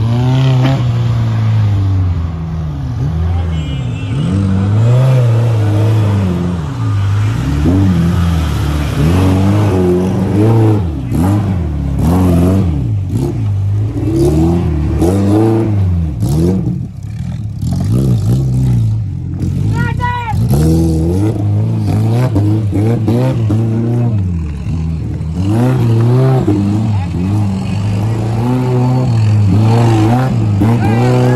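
Daihatsu Feroza's 16-valve four-cylinder engine revving up and falling back again and again under load as the 4x4 climbs and crosses steep dirt mounds.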